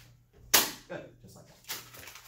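A fist punching through four layers of folded scrap paper: one sharp paper crack and tear about half a second in, then a second, smaller crack near the end.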